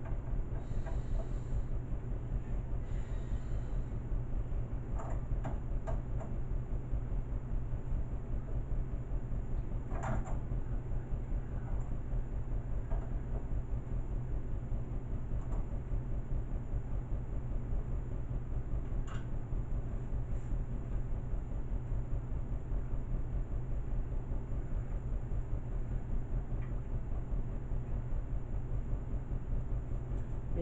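A steady low hum, with a few faint clicks of a small tool and parts being handled, about five, ten and nineteen seconds in.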